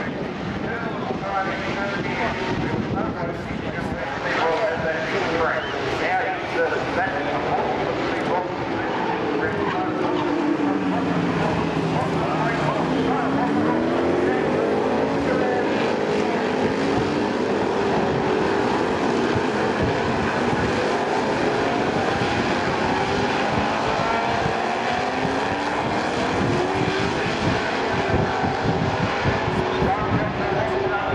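Formula 5000 race cars' V8 engines running at a hairpin, their pitch falling as they slow for the corner and rising as they accelerate away, more than once.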